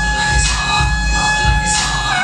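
Alto saxophone holding one long steady note over a backing track with a bass-heavy beat and cymbals.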